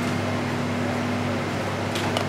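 Steady hum and hiss of a kitchen ventilation fan, with a faint low tone held under it.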